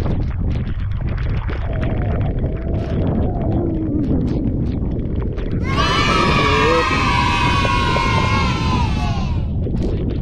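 Wind buffeting the microphone on an open boat at sea. About six seconds in, a loud, high-pitched drawn-out cry starts sharply, lasts about four seconds while slowly falling in pitch, and cuts off.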